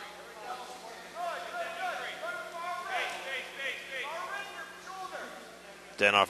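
Several voices shouting and calling out at a distance over a faint steady hum, with no single voice close to the microphone.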